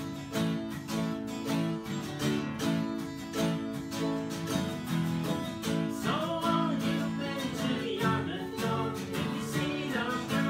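Acoustic guitar strummed in a steady rhythm, with singing coming in about six seconds in.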